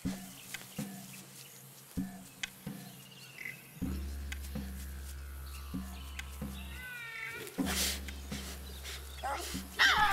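Tasmanian devil calling: a short wavering call about seven seconds in, then a loud harsh call starting just before the end, a warning to another devil to keep its distance. A low steady drone of background music runs underneath from about four seconds in, with scattered rustles and snaps.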